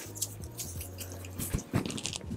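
Quiet background music with a low bass line, and a few brief crackling rustles of hands parting and sectioning thick, damp curly hair.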